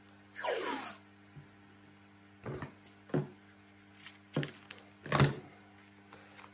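Adhesive tape pulled off its roll with a short, falling rasp about half a second in, followed by several brief clicks and taps as the tape strip and card are handled.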